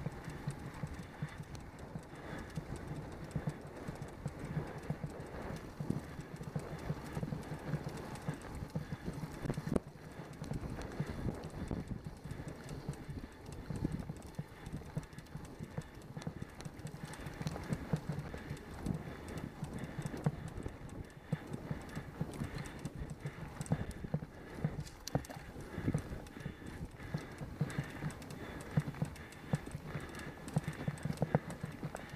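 Ride noise from a bicycle-mounted camera rolling over rough, cracked asphalt: a steady rumble with rapid, irregular knocking and rattling from road vibration, mixed with wind.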